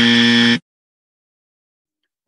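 Editor's "wrong" sound effect: a loud, steady buzzer-like tone that cuts off abruptly about half a second in.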